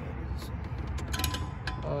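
A few light metallic clicks from a nitrous bottle bracket's latch handle being worked, about a second in, over a steady low rumble.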